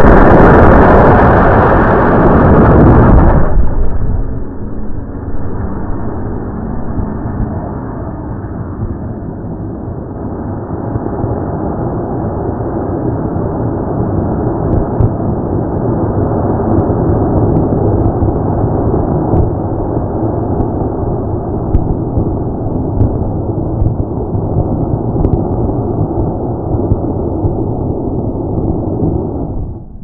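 Model rocket motor firing right beside the launch-pad camera, a loud rushing roar that cuts off about three and a half seconds in. A steady, lower rushing noise follows on the microphone.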